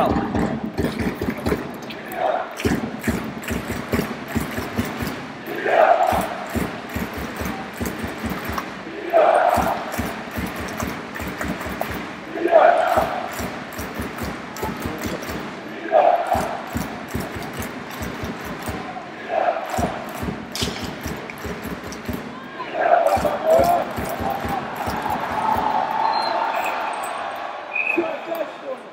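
Ice hockey arena crowd chanting in unison, one shout about every three seconds. Between the shouts there are many rapid sharp thumps, like a fan drum.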